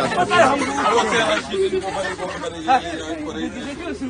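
Speech only: several people talking, their voices overlapping in chatter.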